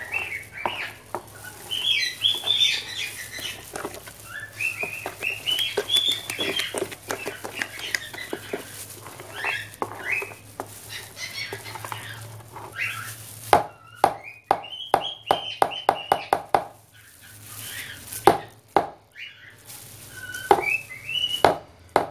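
A utensil scraping and knocking in a plastic basin of thick homemade soap paste, with a run of sharp clicks about two-thirds of the way through. Birds chirp repeatedly in the background throughout.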